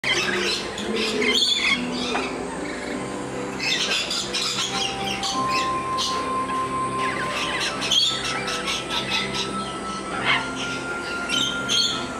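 Rainbow lorikeets giving several short, harsh squawks, over steady background music with long held notes.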